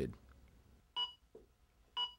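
Zoll AED Plus Trainer 2 giving two short electronic beeps about a second apart.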